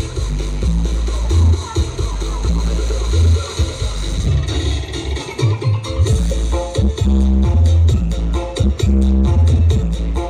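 Dance music played loud through the SAE Audio carnival sound-system truck's speaker stack, dominated by a heavy sub-bass beat. The bass becomes fuller and steadier from about two-thirds of the way in.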